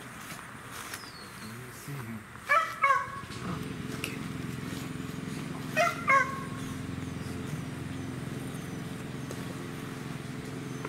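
A dog barking, two quick barks about two and a half seconds in and two more about six seconds in. From about three and a half seconds a steady low engine hum runs underneath.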